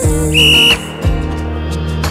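Background pop music with singing, cut across by one short, high, steady beep about a third of a second in, lasting under half a second. The beep is the workout interval timer signalling the end of one exercise and the start of the next.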